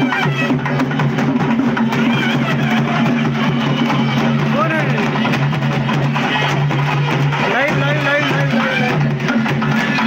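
Live procession music: drumming over a steady low drone, with crowd voices calling over it.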